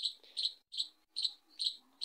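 Short high-pitched chirps repeating evenly, about five in two seconds.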